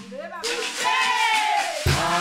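Maloya music from Réunion: the drums and kayamb rattle stop, and a lone voice sings a single arching, wavering call. The full percussion comes back in just before the end.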